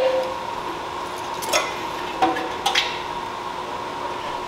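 A few short, sharp clicks and knocks of plastic parts and wiring being handled as the stock taillight and turn-signal wiring is pulled from a motorcycle's rear fender. A faint steady hum runs under them.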